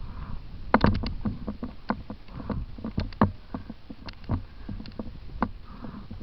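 Mountain bike riding over a rocky trail: irregular sharp knocks and rattles, with a quick cluster about a second in, over a steady low rumble of tyres and wind.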